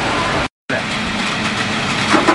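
Hammer mill running, a loud steady machine noise with a low hum underneath; the sound drops out completely for a moment about half a second in.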